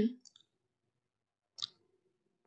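The last syllable of a spoken line, then near silence broken by a single short, sharp click about one and a half seconds in.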